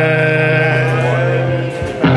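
Live blues band of electric guitar, drums and upright double bass holding one long sustained note with a slight waver. The note breaks off shortly before the end, and the full band comes straight back in.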